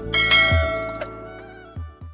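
Bright bell-chime sound effect struck just after the start and ringing away over about a second, over the closing bars of background music with low bass beats, fading toward the end.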